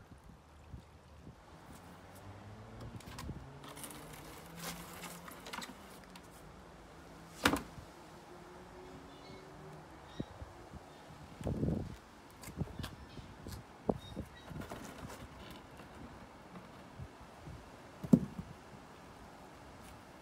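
Scattered knocks and thuds as a cast concrete countertop and its mold boards are handled, the sharpest knocks about a third of the way in and near the end. A faint low hum runs underneath in the first few seconds.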